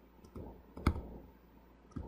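Two sharp, isolated clicks about a second apart in a quiet room, with a soft low rustle shortly before the first.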